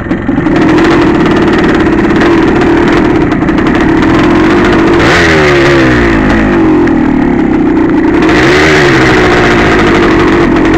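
Two-stroke dirt bike engine running while riding over river gravel, its pitch holding steady, falling in a few glides about halfway through and rising briefly near the end.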